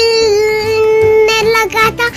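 A child's singing voice holding one long note, then a few short notes near the end.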